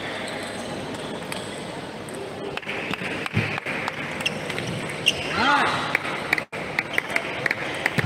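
Table tennis balls clicking sharply off bats and tables, over the murmur of voices in a large hall. The clicks come thicker after a couple of seconds, and a voice rises briefly about five and a half seconds in.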